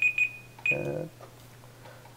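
Electronic beeping: a few quick high-pitched beeps on one pitch in the first part, the last one about two-thirds of a second in, alongside a short voiced sound, over a faint steady low hum.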